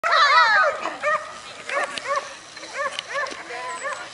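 Ibizan hound yelping in a rapid string of short, high cries that rise and fall in pitch, loudest at the start. It is the excited yelping of a coursing hound held back and eager to chase.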